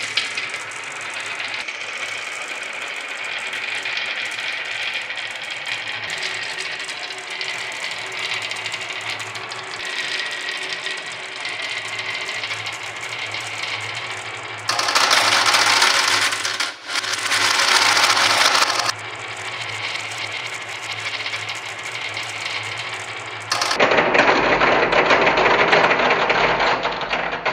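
Dozens of marbles rolling and clicking together along a wavy groove in a wooden track, a dense continuous rattle. It grows louder for a few seconds in the middle and again near the end.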